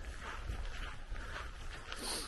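Wind buffeting the microphone as a low rumble, with faint footsteps on a gravel path.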